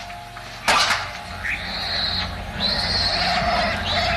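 A sharp thump, then two long, shrill squeals from piglets.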